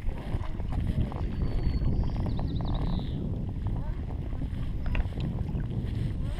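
Steady low wind rumble on the microphone, with water lapping around an inflatable kayak on a lake.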